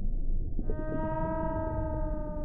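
Underwater-style logo sound effect: a low rumble, joined about half a second in by one long whale-like call that falls slightly in pitch.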